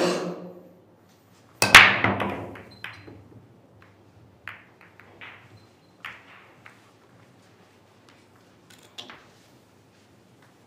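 A sharp knock at the very start, then the break shot in Chinese eight-ball about a second and a half in. The cue ball crashes into the rack of resin pool balls with a loud clatter. Single clicks of balls striking one another and the cushions follow, further apart and quieter, over the next several seconds.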